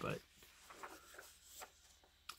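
Faint rustle of a comic book's paper page being turned by hand.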